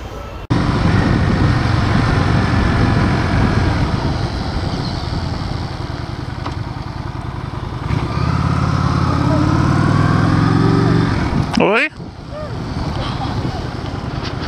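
Honda Shadow 750 V-twin motorcycle engine running under way, starting abruptly just after the start. About eight seconds in the engine note rises as it accelerates, then drops away sharply near the end as the throttle is closed.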